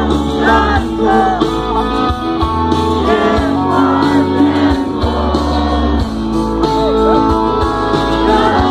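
Rock band playing live: a lead vocal sung in short phrases over electric guitars, bass and drums, with a heavy steady bass underneath.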